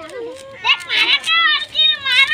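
Children's voices: a quieter voice at first, then loud, high-pitched calling and shouting from about half a second in.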